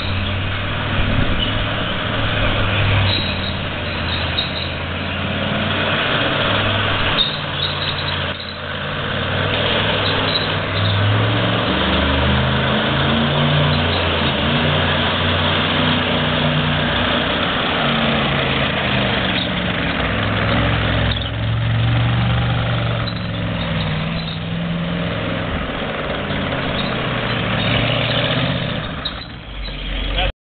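M5A1 Stuart light tank re-engined with a Chevy 366 big-block V8 and Turbo 350 automatic, driving: the V8's note rises and falls several times with the throttle and sounds like a hot rod rather than the stock twin Cadillac engines.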